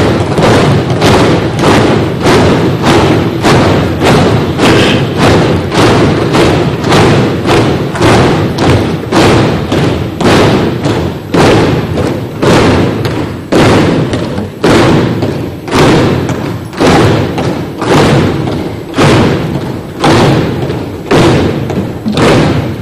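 Members of parliament pounding their desks in unison as applause: loud, rhythmic thudding over a continuous din of the crowd. It beats about twice a second at first and slows to about once a second in the second half.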